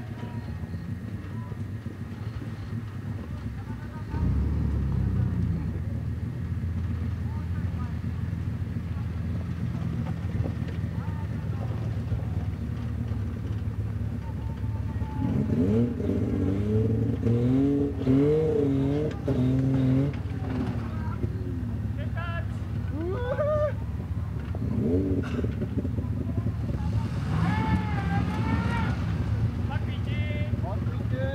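Land Rover Defender 90's engine running under load as the truck crawls up a dirt slope, getting louder about four seconds in and then holding a steady low note.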